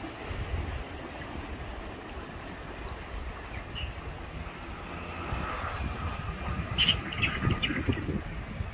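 Outdoor coastal ambience: wind rumbling on the microphone throughout, with a few short bird chirps near the end.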